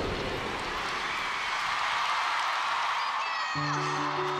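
Arena concert crowd cheering and screaming in a steady wash as a dance track ends. Near the end, soft sustained music notes come in under it.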